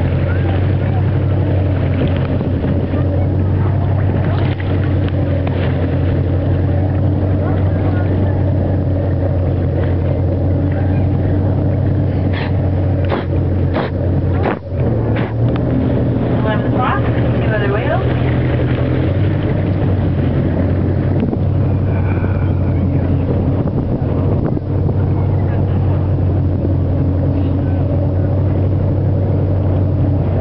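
Whale-watching boat's engine running steadily, a low droning hum with wind on the microphone. A few sharp clicks come about halfway through.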